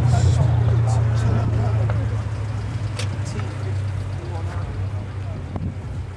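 Modified Mazda RX-7 engine idling with a steady low drone that grows fainter toward the end.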